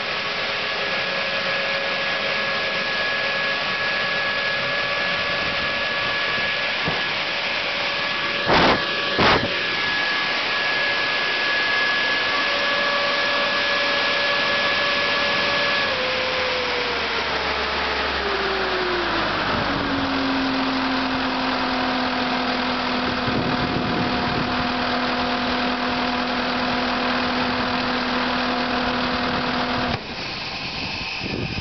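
Diesel engine of a Superior Broom DT80CT construction sweeper running at working speed, then slowing down to a steady idle a little past the middle. Two sharp knocks come about nine seconds in.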